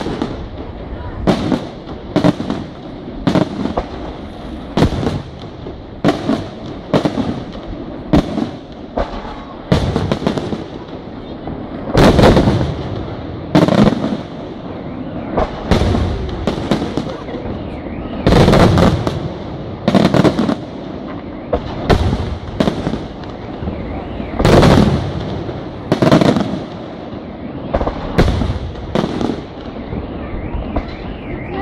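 Aerial firework shells bursting in quick succession, one or two a second, each a sharp bang with a short trailing rumble. The heaviest bursts come about twelve, eighteen and twenty-four seconds in.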